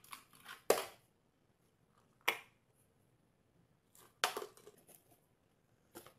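Objects knocked and scraped across a glass tabletop as a small dog paws and noses at them: three sharp knocks, each trailing into a short scrape, with a small click near the end.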